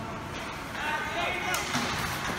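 Indoor ice rink din with high-pitched children's shouts starting a little way in, and a single sharp clack about halfway through, like a hockey stick striking the puck or ice.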